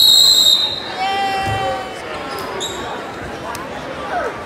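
Referee's whistle blown in one loud, sharp blast of about half a second, signalling the fall as the pinned wrestler is held down, then a second, shorter whistle about two and a half seconds later. Crowd shouting and voices fill the gym around it.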